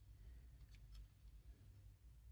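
Near silence: faint room tone, with a couple of faint light clicks from plastic model parts being handled, about a second in.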